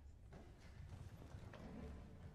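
Faint shuffling and scattered light knocks from string players getting up from their chairs after the final chord, starting about a third of a second in.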